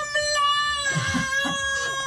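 A woman's theatrical mock-crying wail: one long, high-pitched wail held at nearly the same pitch, sagging slightly near the end.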